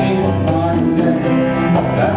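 A live indie-pop band playing in a room: upright piano chords and a bowed cello carrying held low notes, with a dense, steady band sound.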